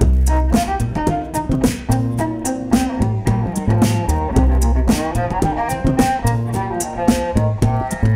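Cello bowed in a funky melody over a deep bass line and a steady looped beatboxed beat, built up live with a loop pedal.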